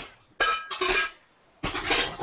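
Household clatter, brief clinks of dishes or pots with a short ringing tone, cut off abruptly by the call's noise gate.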